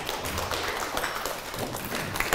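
Audience applauding, many hands clapping in a dense, steady patter.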